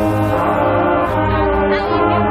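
A marching band's brass section, French horns and trumpets over low brass, playing held chords at full volume, the harmony shifting every half-second to second.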